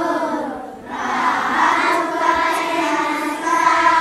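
Many children's voices singing together in unison, a Swahili patriotic song, with long held notes and a short breath just under a second in.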